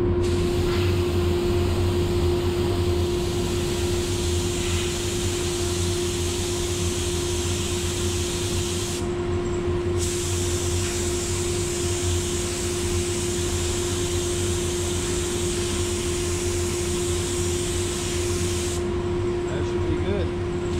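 Paint booth ventilation running with a steady hum under the hiss of a gravity-feed paint spray gun laying light coats of colour; the spray hiss stops briefly about halfway through and again near the end.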